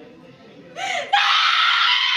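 A woman screaming and wailing in grief: a short cry about three quarters of a second in, then a loud, high, sustained wail from just past a second.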